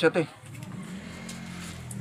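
A man's voice trails off in the first moment. Then a steady low hum from a small motor runs on.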